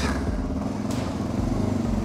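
Honda NX650 Dominator's single-cylinder four-stroke engine running steadily at low revs.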